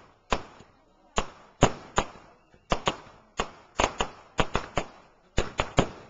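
Fireworks going off in rapid, irregular succession: about sixteen sharp bangs in six seconds, some in quick clusters of two or three, each trailing off in a short echo.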